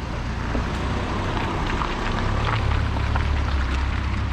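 Volkswagen Transporter van's engine running as the van pulls away, its low rumble growing louder about two and a half seconds in.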